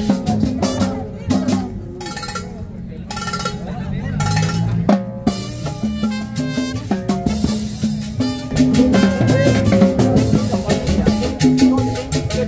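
Live band playing salsa music, with drums and percussion keeping a steady dance beat under horn and instrument lines.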